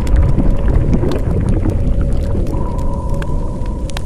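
Logo-reveal sound effect: a loud deep rumble with scattered crackles and steady held tones, one of which returns about two and a half seconds in.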